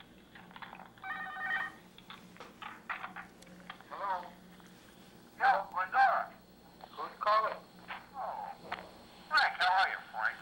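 Playback of a recorded telephone call: muffled, hard-to-make-out speech over a phone line, with a steady low hum underneath.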